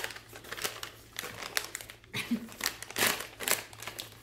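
Crinkly snack pouch rustling and crackling in the hands as someone struggles to get it open, in irregular bursts of crinkling.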